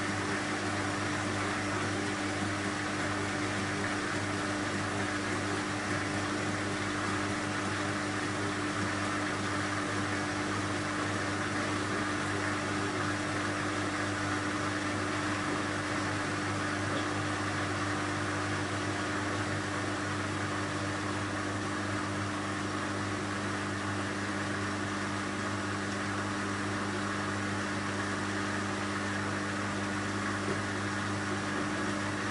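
BEKO front-loading washing machine running mid-cycle on its Dark Textiles program: a steady, unbroken hum over a wash of drum and water noise.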